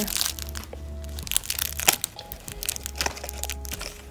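Irregular crinkling and crackling as a plush baby teether toy is handled and turned over, with faint music underneath.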